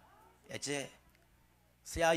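A short voice sound through the church sound system about half a second in, falling in pitch and lasting about a third of a second, in an otherwise quiet pause; a man's speech starts again near the end.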